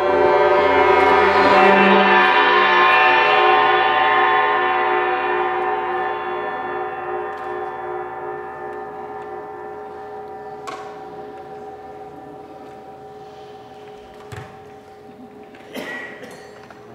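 Large hanging gong ringing after a mallet stroke, its many tones swelling for about two seconds and then slowly dying away. Some of the higher tones stop about ten seconds in, and there are a couple of light knocks near the end.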